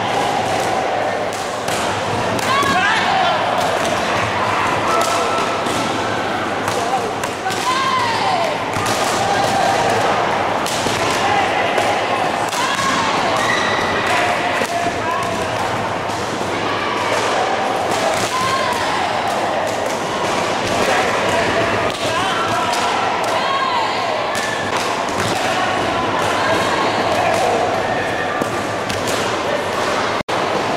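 Many taekwondo kicks smacking against handheld kick paddles, a constant scatter of sharp slaps from pairs practising all over the hall, with a crowd of voices and shouts underneath.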